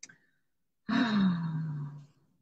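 A woman's voiced, breathy sigh about a second in, its pitch falling and then holding for about a second; a brief faint click comes just before it.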